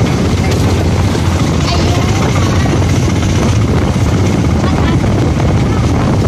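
Auto-rickshaw driving along a road: its small engine running steadily with wind rushing loudly over the microphone.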